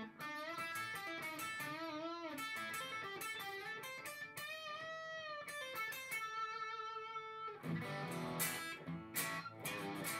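Epiphone 1956 Les Paul Pro electric guitar on its bridge P-90 pickup, overdriven through a Tone City Golden Plexi pedal. It plays single-note lead lines with string bends and vibrato, then switches to strummed chords about three-quarters of the way in.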